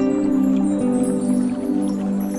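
Calm new-age sleep music of slow, held chords, with small water-drip sounds scattered over it.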